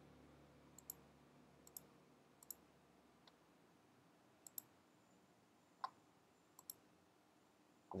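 Faint, scattered clicks from a computer keyboard and mouse, about a dozen, many in quick pairs, over near-silent room tone.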